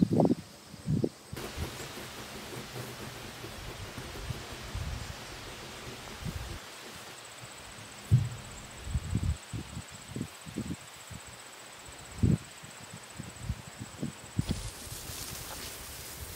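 Outdoor rural ambience of breeze rustling grass and trees, with scattered soft low thumps. A steady high-pitched insect trill runs for several seconds in the middle.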